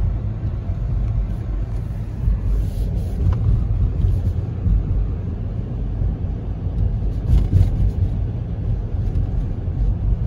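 Road and engine noise of a car driving on snowy streets, heard from inside the cabin: a steady low rumble.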